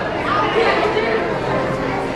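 Background chatter: several people's voices overlapping at a steady level in a busy shop, with no single clear speaker.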